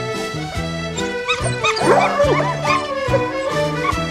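Background music with a steady beat, over which a pack of hunting hounds gives tongue in a burst of short cries from about a second in until about three seconds in.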